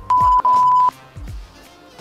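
Censor bleep: a loud, steady single-pitch beep lasting under a second, broken briefly near its start. Underneath is background hip-hop music with deep bass beats.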